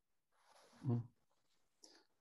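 A single short, low vocal sound about a second in, heard over a video-call connection; otherwise near silence.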